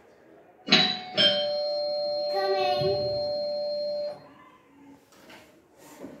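Doorbell chime: two notes struck about half a second apart, ringing on for about three seconds and then stopping abruptly.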